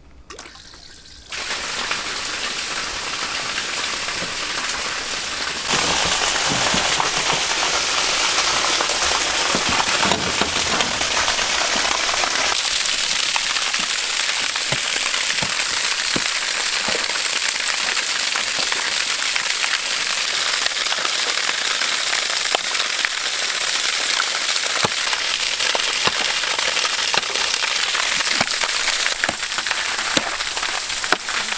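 Water pumped out of an above-ground pool, gushing from a hose in a steady stream and splashing down onto ice and snow. It starts suddenly about a second in and grows louder a few seconds later, with a few sharp clicks through it.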